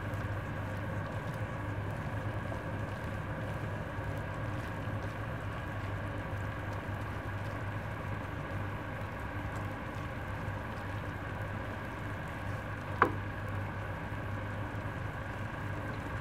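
Shredded chicken filling sizzling in a pan with no water left in the bottom, over a steady low hum. A single sharp knock about thirteen seconds in.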